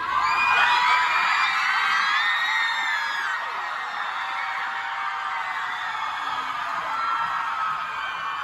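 Large concert crowd screaming and cheering, a dense mass of high-pitched shrieks and whoops. It breaks out suddenly, is loudest over the first three seconds, then carries on a little lower.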